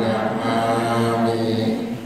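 Buddhist chanting by a group in unison, held on one steady pitch in a monotone recitation, with a brief breath about half a second in; the chant stops near the end.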